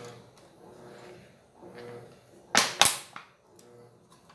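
Two sharp plastic clacks about a third of a second apart, a little over halfway in, as a small plastic cup is picked up and handled on the counter.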